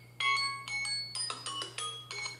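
A quick run of bright chiming notes at several different pitches, each struck sharply and left ringing, one after another in under two seconds, like a glockenspiel or chime tone.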